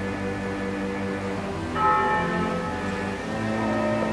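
Film-score music with held low tones; about two seconds in, a single bell is struck and rings out slowly over it.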